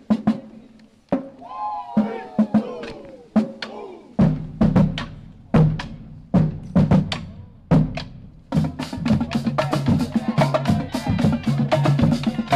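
College marching drumline playing a cadence on snare drums, bass drums and crash cymbals. Separate sharp strokes open it, and the strokes turn much faster and denser about two-thirds of the way through.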